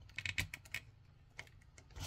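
Light plastic clicks of LEGO bricks as fingers work at prying a clear windshield piece off a LEGO model: a quick run of clicks in the first second, one more a little later. The piece does not come off.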